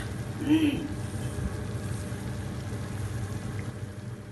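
Chicken broth simmering and bubbling in a clay tajine, a steady soft bubbling hiss over a low steady hum.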